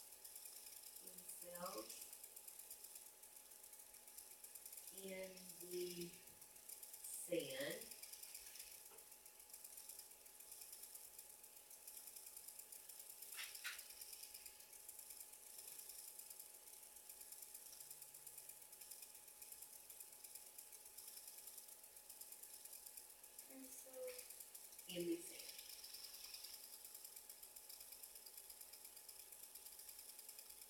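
Near silence: classroom room tone with a faint steady hum and a fine, fast, even ticking. A few brief, faint murmurs of distant voices come about a second in, around five to eight seconds in, and again near twenty-five seconds.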